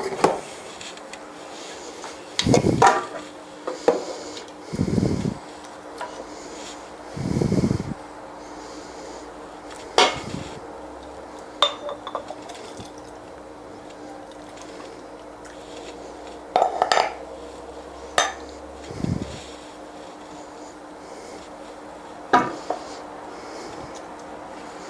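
Glass jars, a jug and a pot being handled while jars are filled with hot marmalade: scattered clinks and knocks of glass and metal, with a few duller thumps.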